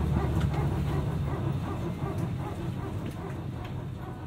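Steady low cabin rumble inside a parked Airbus A320, with faint, indistinct higher sounds over it. The whole fades out toward the end.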